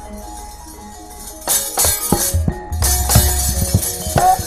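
Gamelan accompaniment for a wayang kulit fight. About a second and a half in, it turns loud, with rapid clashing of metal plates (the kecrek) and drum strokes over the gamelan.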